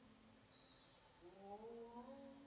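Faint humming voice, a low held pitch that rises and grows a little louder about a second and a half in.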